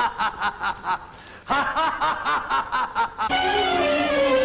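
A man laughing in long runs of quick 'ha-ha-ha' bursts, with a brief pause about a second in before the laughter resumes. Near the end, an orchestral film score with strings comes in, playing a falling line.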